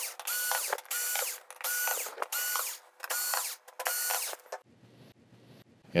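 A small electric screwdriver runs in short pulses with a steady whine, about seven bursts in quick succession, as it backs out the screws holding a TV main board to its metal chassis. It stops a little before the end.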